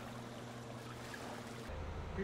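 Water washing along a catamaran's hull with a steady low hum underneath; about three-quarters of the way through, the sound cuts to a different, stronger low hum with less hiss.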